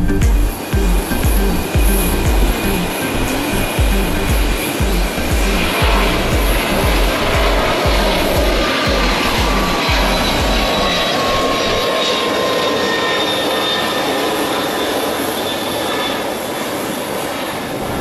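Jet airliner taking off, its twin engines at takeoff power: a steady rushing noise with high whining tones that slowly fall in pitch. A low music beat runs underneath and fades out about two-thirds of the way through.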